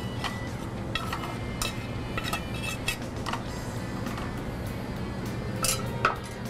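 A metal spoon scooping quinoa out of a sauté pan into a bowl, with scattered light clinks and scrapes of metal on the pan, over background music.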